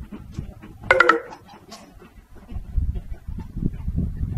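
A flock of American white ibises grunting, with one loud, nasal call about a second in.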